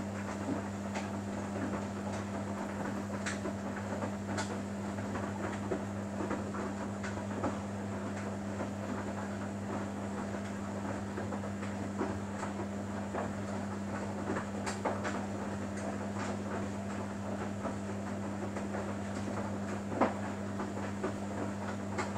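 Samsung Bespoke AI WW11BB704DGW front-loading washing machine in its wash phase, the drum turning slowly and tumbling wet laundry. A steady low hum runs under irregular light clicks and knocks as the load drops inside the drum, with one sharper knock about two seconds before the end.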